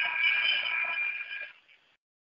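Basketball arena horn sounding one steady, multi-pitched blast for about a second and a half and then cutting off, heard through a narrow-band radio broadcast feed.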